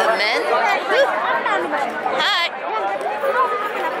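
People's voices talking over one another, with crowd chatter around them.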